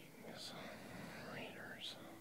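Faint whispering.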